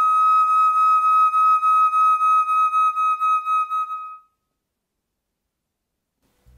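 Concert flute holding one long high note, its loudness pulsing evenly with vibrato, fading out about four seconds in.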